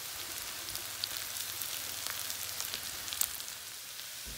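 Diced pork and freshly added shredded cabbage sizzling in a hot frying pan: a steady hiss with scattered crackling pops.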